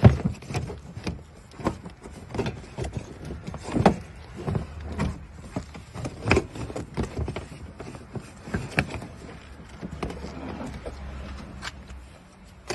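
Irregular knocks, clicks and rustling from a car boot's floor cover and lining being pulled up and moved about by hand. The loudest knock comes right at the start, with others about four and six seconds in.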